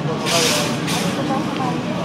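Mall ambience: a steady low hum with faint scattered voices in the background. A short burst of hiss comes about a quarter second in and lasts a little over half a second.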